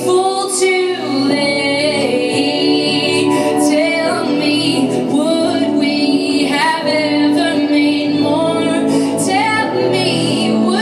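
A woman singing long held notes with a wavering pitch over a live band of electric guitars and drums.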